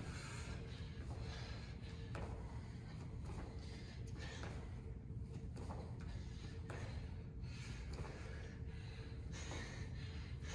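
A man breathing hard while doing jump lunges, with faint thuds at irregular intervals from his feet landing on the hard floor, over a steady room hum.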